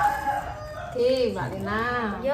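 A rooster crowing, with pitched notes that rise, hold and fall, mixed with people's voices.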